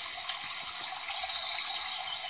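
Steady rushing sound of running water. About a second in, a louder high, fast-repeating trill joins it for about a second.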